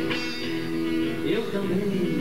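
Nylon-string acoustic guitar being strummed, with a man's voice singing held, gliding notes into a stage microphone.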